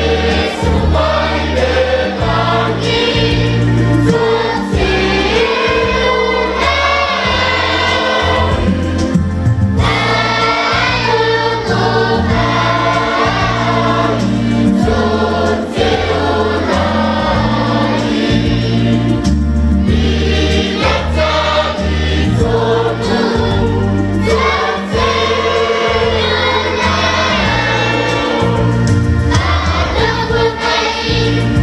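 A Samoan church choir of children and adults singing a hymn, with short pauses between phrases.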